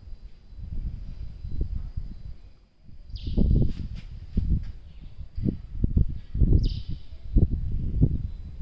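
Wind buffeting the microphone in irregular gusts, growing stronger about three seconds in. Twice, about three seconds apart, a short high chirp falls in pitch.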